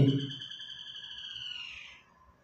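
A single high, steady whistling tone lasting nearly two seconds, bending slightly down in pitch as it fades near the end.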